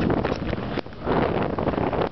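Storm wind buffeting the microphone, a loud rushing noise that drops off briefly a little under a second in and then comes back.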